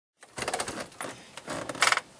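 Irregular rustling and clicking of handling noise, with a short louder burst near the end.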